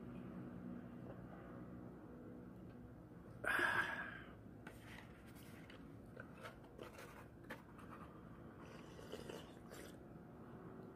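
Quiet eating sounds over a cup of ramen: one short, louder sip about three and a half seconds in, then scattered faint clicks and taps as the cup bowl and chopsticks are handled.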